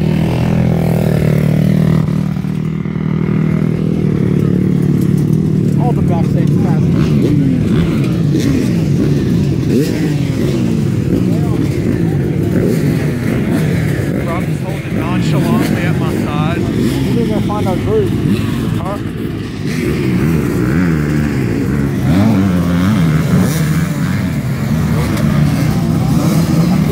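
Many dirt bikes running together on a start line: a steady idle at first, then from a few seconds in many engines blipping their throttles, their pitches rising and falling over one another.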